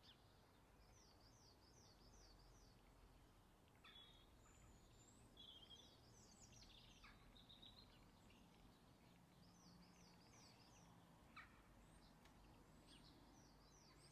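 Faint birdsong over a near-silent background: high chirping notes in short repeated phrases, returning every few seconds. One brief sharper tick sounds late on.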